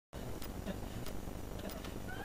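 Low steady background rumble and hiss with a few faint, scattered clicks.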